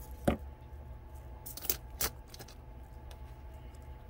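A few small sharp clicks and taps, the loudest about a third of a second in and several more near the middle, from handling thin craft wire, a bead and a cast-acrylic chandelier piece, over a low steady hum.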